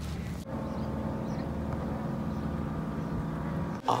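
A steady motor hum made of several held tones, starting sharply about half a second in and cutting off just before the end.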